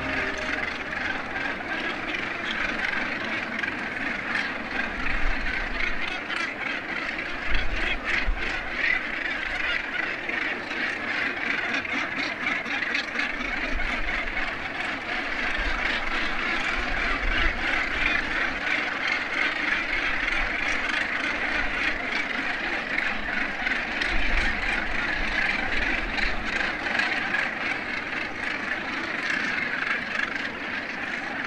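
A northern gannet colony: many gannets calling at once in a continuous, overlapping din. Gusts of wind buffet the microphone now and then with low rumbles.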